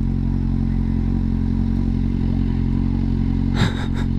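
Kawasaki Z750R's inline-four engine idling steadily, with a brief sharper sound near the end.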